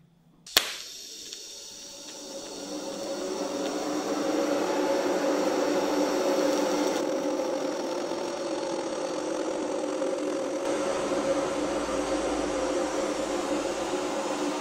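TIG welding arc burning on rusty, mill-scaled steel that has not been cleaned. After a sharp click about half a second in, a steady hiss with a low buzzing hum builds over the first few seconds and then holds.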